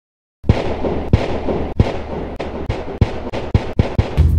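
Intro music starting about half a second in with heavy booming hits over a rushing noise, the hits coming faster and faster toward the end.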